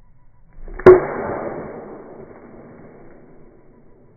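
White oak nunchaku striking a half-inch poplar board and breaking a shard off it: one sharp crack about a second in. The crack trails into a long, dull, fading rumble over the next two seconds, the hit slowed down for slow motion.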